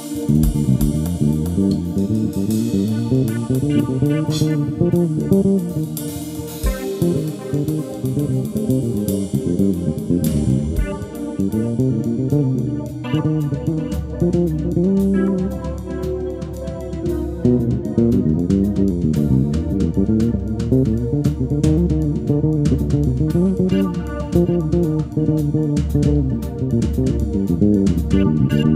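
Live instrumental band music led by a melodic electric bass guitar, with a drum kit and keyboard playing along.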